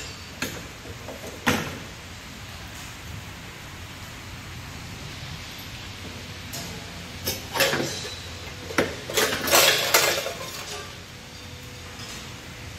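Metal rods and stainless-steel parts of a multihead weigher clinking and scraping as they are handled and lifted out: two sharp clinks in the first two seconds, then a cluster of louder metallic clinks and scrapes from about seven to ten seconds in, over a steady low hum.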